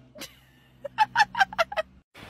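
A woman laughing: a quick run of about seven short 'ha' bursts about a second in.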